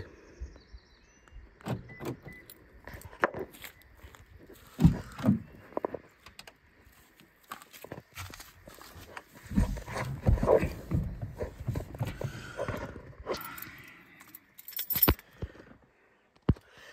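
Car keys jangling, with scattered clicks and thumps as a 2005 Toyota Camry is unlocked with its key fob and the driver climbs in; the engine is not yet running.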